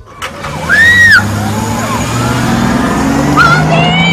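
A girl crying out in high, wavering wails, the loudest about a second in, over the low hum of a car engine running close by.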